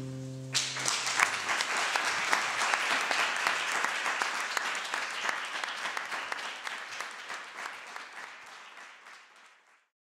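The last held chord of the music stops about half a second in and an audience breaks into applause, which slowly fades away toward the end.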